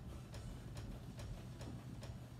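Skipping rope: faint light taps repeating evenly, a little over two a second, as the rope and feet come down on the floor with each jump.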